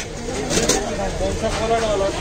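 People's voices in the background around the food stall, with a brief clatter about half a second in.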